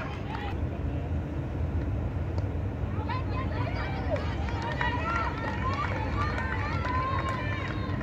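Indistinct voices of people talking near the microphone over a steady low outdoor rumble at a cricket ground, the chatter busier from about three seconds in.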